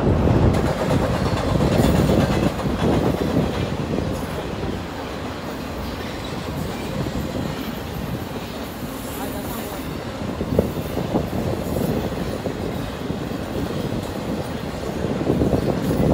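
Intermodal freight train of containers and trailers rolling past, a steady rumble of cars and wheels on the rails. There is one sharp clack about two-thirds of the way through.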